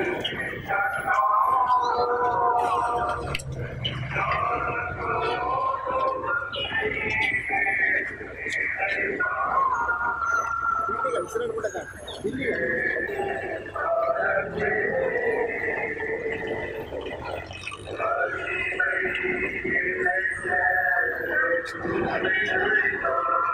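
People's voices, carrying on without pause, many of the pitched tones drawn out for a second or more.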